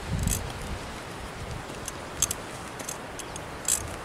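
A few faint, short clinks, typical of a horse's metal bit and bridle tack as it is ridden at a walk, over a steady low rumble of wind on the microphone.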